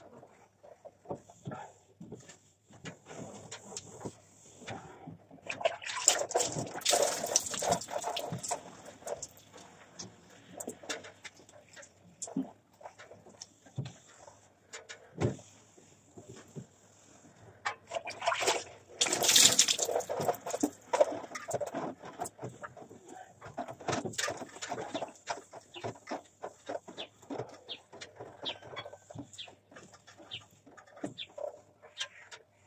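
Window glass and frame being washed by hand with a wet cloth: irregular bursts of rubbing and wiping with water, among scattered knocks and clicks. The loudest rubbing comes about a quarter of the way in and again about two thirds through.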